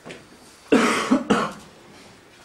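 Someone coughs twice in quick succession, two short loud coughs about half a second apart.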